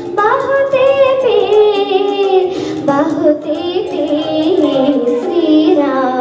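A girl singing a Telugu film song into a handheld microphone over a recorded backing track, her voice moving through long, wavering, ornamented phrases.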